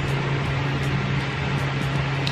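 Electric fan running: a steady low hum over an even rushing noise.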